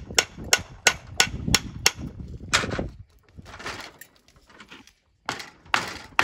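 A hammer striking a steel chisel wedged in a grinder-cut slot in a stone block, about three sharp blows a second for the first two seconds. The blows are driving the stone to split along the cut. After that come weaker, scattered knocks and scraping.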